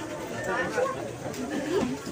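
Overlapping chatter of several children's voices, with no single speaker clear.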